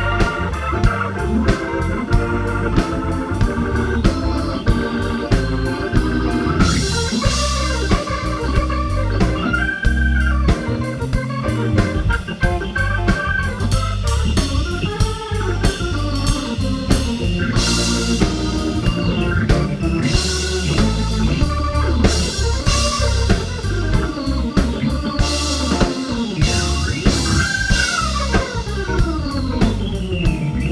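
A blues band playing an instrumental stretch led by organ from a Nord Electro 5D stage keyboard, with sustained chords and runs over steady drums and bass. Several notes glide down in pitch near the end.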